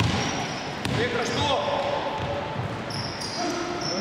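Basketball shoes squeaking in short chirps on a wooden court floor, with a basketball bouncing, in an echoing sports hall.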